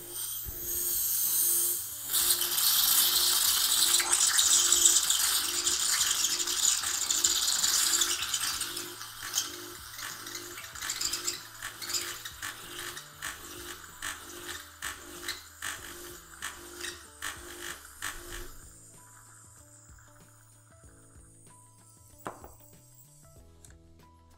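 Hot water and steam hissing and spitting from a De'Longhi single-boiler espresso machine's steam wand into a glass, with the pump humming and ticking under it. Hot water is being drawn off so fresh water can cool the boiler from steam temperature down to brew temperature. The hiss is loudest in the first few seconds, fades, and stops well before the end, leaving a faint hum.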